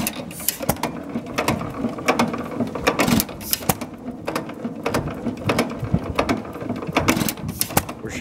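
Associated Chore Boy hit-and-miss gas engine of about 1919–20 running very slowly, with its gooseneck trip governor: a steady run of mechanical clicks and knocks from the engine as its flywheels turn, with a few louder strokes among them.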